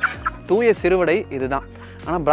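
Chicken calling with a few arched, warbling clucks about half a second in, over background music.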